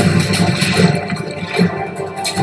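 Film trailer soundtrack: music under a loud rushing swell of sound effects that comes in suddenly at the start, with a few heavier hits along the way.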